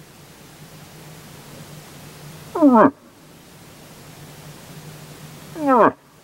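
Hunter's moose call voiced through a cone-shaped calling horn: two short calls about three seconds apart, each falling sharply in pitch.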